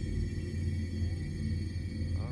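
Steady low hum of a car's engine idling, heard inside the cabin.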